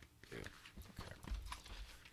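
Faint handling of a large paperback atlas as it is picked up and lifted: a quick, irregular run of soft knocks and rustles from the cover and pages.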